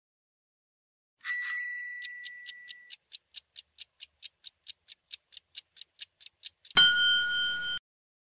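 Countdown-timer sound effect: a chime, then steady quick ticking at about four to five ticks a second, ending in a loud ringing bell about a second long that cuts off, signalling that time is up.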